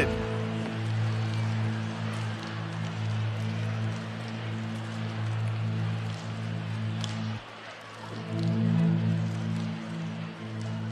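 Soft worship keyboard pad holding low sustained chords under the general hubbub of a congregation sitting back down. The low chord breaks off briefly about seven and a half seconds in, then a new chord comes in.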